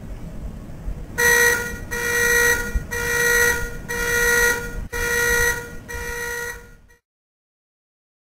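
Electronic alarm clock beeping six times, about one beep a second, over a low background rumble. The last beep is quieter, then the sound cuts off abruptly.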